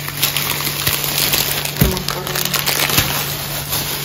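Plastic shopping bags and food packaging rustling and crinkling as groceries are handled, with two soft knocks partway through as items are set down.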